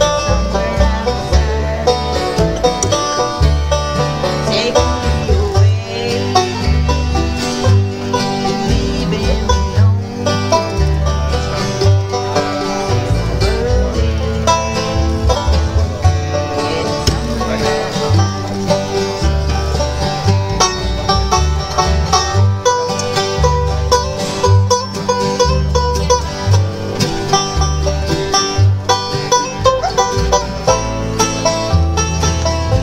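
A bluegrass jam of several acoustic guitars, a banjo and an upright bass playing a tune together at a steady tempo, the bass thumping out the low notes.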